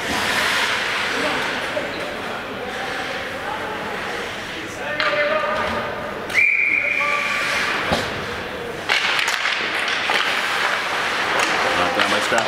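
A hockey referee's whistle blown once, a single high note held for about a second, over the chatter and echo of an arena crowd. A couple of sharp knocks follow shortly after.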